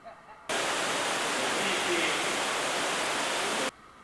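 Rushing water in a spa pool, a loud, steady, even noise that starts suddenly about half a second in and cuts off abruptly near the end.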